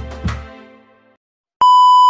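Background music fading out, a moment of silence, then a loud steady 1 kHz test-card beep starting near the end, the tone that goes with TV colour bars.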